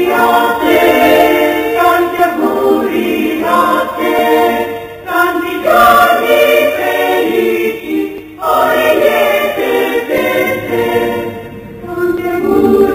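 A choir singing, in phrases with short breaks about five and eight seconds in.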